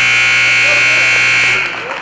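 Gymnasium scoreboard buzzer sounding one long, loud steady tone that cuts off about one and a half seconds in, signalling the end of the wrestling period.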